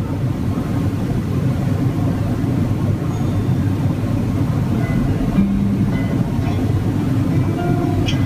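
A steady low rumble that has just faded in, with a faint low held note about five seconds in.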